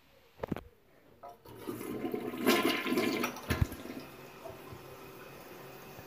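Toilet flushing: a short click about half a second in, then rushing water that builds, peaks and settles into a steady, quieter hiss as the bowl refills.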